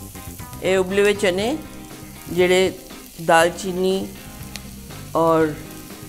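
Sliced onions, ginger and green chillies sizzling as they fry in oil in a pan, with a voice heard in short phrases over it.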